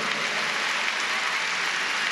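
A large audience applauding, a steady, even clatter of many hands clapping.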